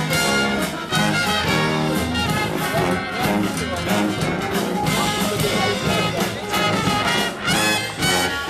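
Live traditional jazz band playing, with a sousaphone bass line under saxophones, trumpet and piano.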